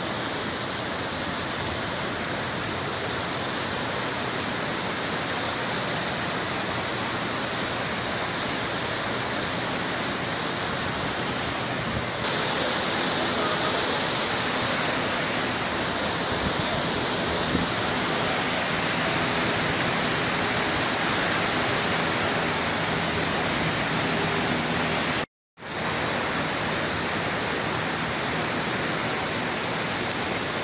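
Steady rush of swollen, muddy river rapids, water churning white over rocks. It grows louder about twelve seconds in and drops out for an instant about three-quarters of the way through.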